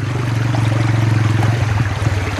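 Shallow stream water rushing steadily over rocks and through a sluice box.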